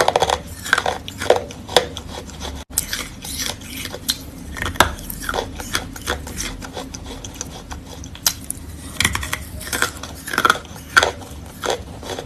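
A person biting into and chewing wet chalk: a run of irregular crisp crunches and wet mouth clicks, thickest near the start and again near the end.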